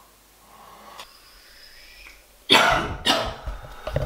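A person coughing twice, loud and sudden, about two and a half seconds in. Before that it is faint, with one small click and a thin high tone.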